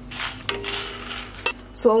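Wooden spatula stirring dried red chillies being dry-roasted in an aluminium kadai: a dry rustling scrape, with two sharp knocks of the spatula on the pan, one about half a second in and one about a second and a half in.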